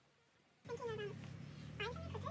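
Electric horse clippers humming steadily, starting after a brief gap of near silence, with two short gliding pitched calls over the hum.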